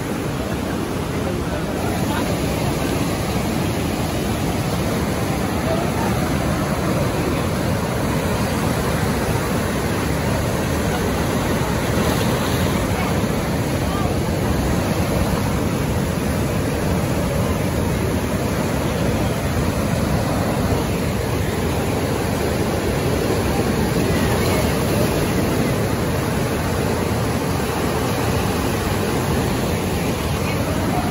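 Steady rushing of the Niagara River's white-water rapids close by: a dense, continuous wash of churning water that gets a little louder about two seconds in.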